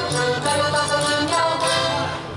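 Live Portuguese folk music: voices singing a melody over accordion and guitar accompaniment, continuous and steady.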